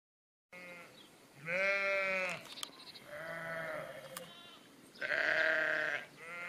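Sheep bleating: three drawn-out bleats, about a second and a half, three, and five seconds in, after a half-second gap of silence at the start.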